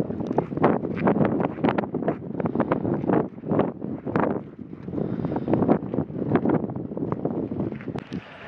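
Footsteps of several people crunching on loose volcanic gravel: many short, irregular crunches, with wind on the microphone.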